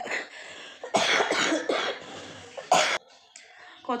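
A woman coughing: several coughs in a fit, ending with a short, sharp one about three seconds in. It is a cough that she says comes on whenever she talks.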